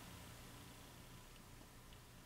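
Near silence with a faint steady low hum from the ballast of a lit two-tube T12 rapid-start fluorescent fixture.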